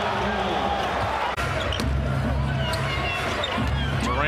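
Live game sound from an NBA arena: a basketball dribbling on the hardwood court and sneakers squeaking over a steady crowd din, with an abrupt splice about a second and a half in.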